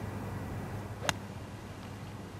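A single crisp strike of a golf iron hitting the ball, about a second in, over a low steady background noise.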